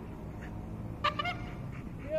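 A Belgian Malinois gives one short, high-pitched whine about a second in, over a steady low background rumble.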